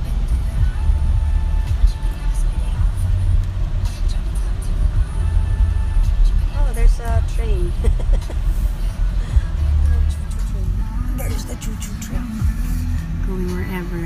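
Low, steady rumble of a car's road and engine noise heard from inside the cabin while driving, with voices and music faintly under it.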